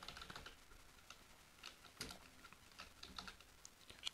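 Faint computer keyboard typing: a scattering of soft, separate keystroke clicks.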